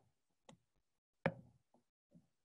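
A few light clicks and taps of a stylus on a drawing tablet as marks are drawn, the loudest a little past a second in.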